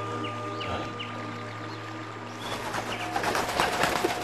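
Background music holding a long, steady chord while birds chirp over it. The chirping and twittering grow busier in the second half as the chord gives way to a new held note.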